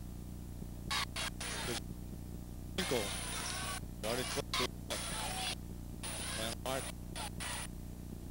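A man's voice talking in short phrases with pauses between them, over a steady low hum.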